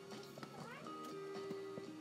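Faint background music with steady held tones.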